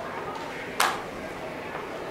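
A single sharp snap a little under a second in, as a deck of playing cards is put into a card box on a small table.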